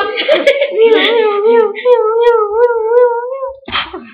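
A person's voice holding one long high wavering note, its pitch wobbling up and down about three times a second, after a short noisy vocal burst at the start; a brief breathy burst near the end.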